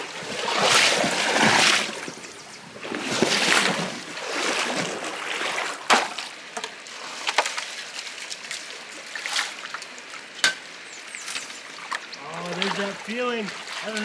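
Creek water splashing and sloshing in two surges as someone wades and works in the shallows. Later come a few sharp scrapes and knocks as a steel shovel digs creek gravel into a plastic gold pan, and voices near the end.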